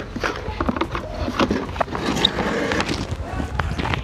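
Plastic parts of an INGCO electric pressure washer being handled as its handle is pushed into the body: a run of light plastic clicks and knocks.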